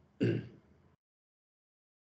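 A man briefly clears his throat once, a short burst shortly after the start.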